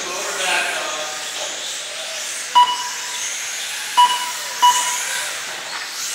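Three short, identical electronic beeps from the race's lap-timing system, the last two close together, marking cars crossing the timing line. Underneath, 1/18-scale brushless RC cars run around the carpet track.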